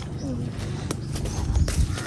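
Low rumble with a few soft thumps and sharp clicks from a handheld camera being moved to point down at the ground.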